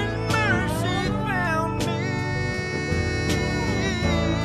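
A live band plays an instrumental passage on electric guitars, bass and drums. A lead line of notes bends and slides up and down over steady chords, with regular drum and cymbal hits.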